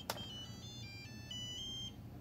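Turnigy TGY-i6S (FlySky i6S) radio-control transmitter playing its electronic startup melody as it powers on: a quick run of beeping notes stepping between pitches, ending on a longer held note. A single sharp click comes at the very start.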